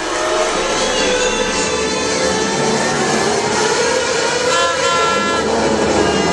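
Formula 1 cars' V8 engines on the race broadcast, played loud over a hall's speakers. It is a dense, steady wail of several pitches that slide up and down as the cars speed up and slow.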